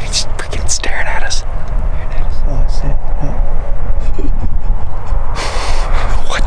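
A man talking, his voice partly masked by wind buffeting the microphone, which makes a constant low rumble.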